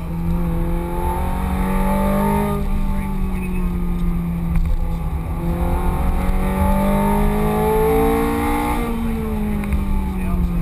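Ferrari F430 Scuderia's 4.3-litre V8, heard from inside the cabin under hard acceleration. The revs climb for about two and a half seconds and drop, climb again from about five seconds in, then fall away near the end. Heavy road and wind rumble runs underneath.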